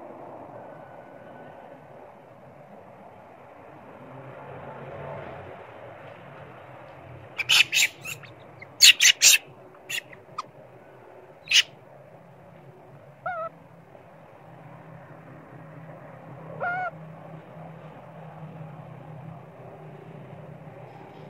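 Long-tailed macaques calling: a quick series of loud, sharp screeches a little past a third of the way in, then two short wavering calls later on.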